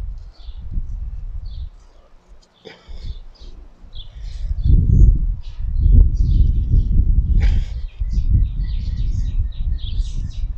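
Gusty low rumble of wind on the microphone, swelling loudest in the middle and dipping briefly about two seconds in. Small birds chirp repeatedly through it.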